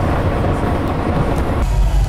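Steady road noise inside a moving tour vehicle, cut off about one and a half seconds in by festival music that comes through as mostly heavy bass.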